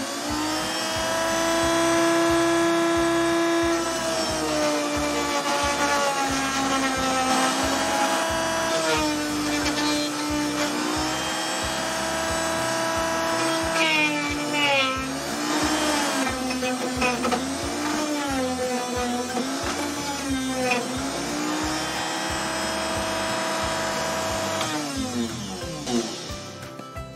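Dremel rotary tool, clamped in a vise, running with an emery sanding bit while a wooden block is pressed onto it to smooth drilled holes. Its high motor whine sags in pitch each time the wood is pushed against the bit and recovers when it eases off. It spins up at the start and winds down near the end.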